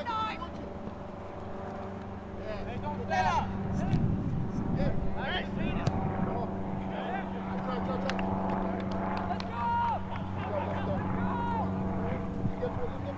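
Soccer players shouting and calling to each other on the field over a steady low engine hum, with a few short knocks.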